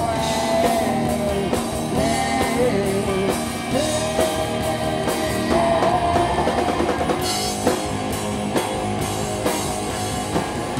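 Live rock band playing an instrumental passage: electric guitar lead holding and bending notes over a drum kit and the other guitar.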